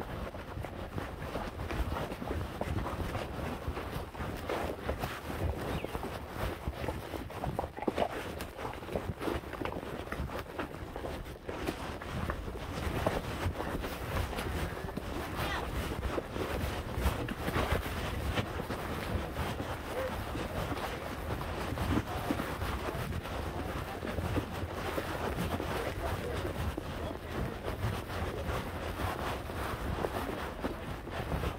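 A horse walking on a trail: hooves, tack and movement noise, with wind and rustling on the microphone.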